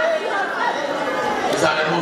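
Several people talking at once, overlapping chatter in a large hall.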